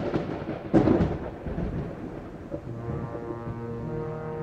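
Thunder sound effect: a sharp thunderclap about a second in, rolling into a long rumble. In the last second or so a held music chord swells in underneath.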